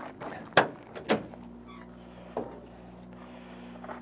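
Bonnet of a 1970 Ford Mustang being unlatched and lifted: two sharp metal clicks of the latch about half a second apart, soon after the start, then a faint steady hum.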